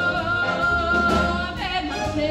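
Live jazz big band with a female vocalist holding one long high note that slides down about three-quarters of the way through, over the band's accompaniment and bass.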